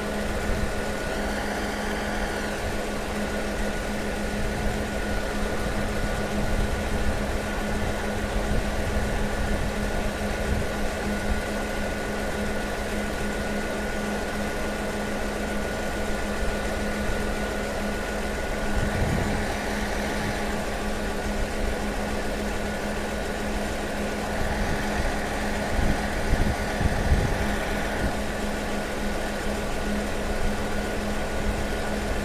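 Diesel railway engine running at idle: a steady low hum throughout, with a few brief louder low rumbles.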